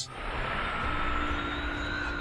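A steady rushing, engine-like drone that swells in at the start, with a faint steady high hum running through it.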